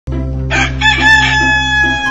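A rooster crowing once, a long call that starts about half a second in and falls slightly in pitch, over a bed of steady background music.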